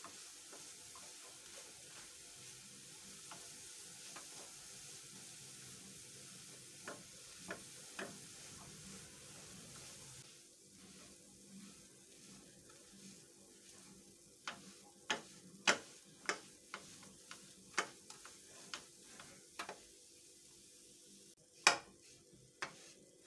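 Silicone spatula stirring and scraping a sticky desiccated-coconut and caramel mixture around a non-stick frying pan over low heat, with a faint steady hiss. In the second half the spatula knocks against the pan in a string of sharp irregular taps, about one or two a second, the loudest one near the end.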